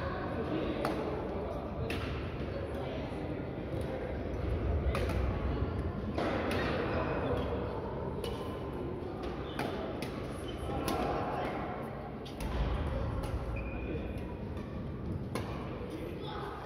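Badminton rackets striking shuttlecocks: a string of sharp hits at irregular intervals, echoing in a large sports hall, over indistinct voices of players.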